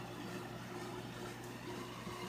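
Air conditioner running with a low, steady hum.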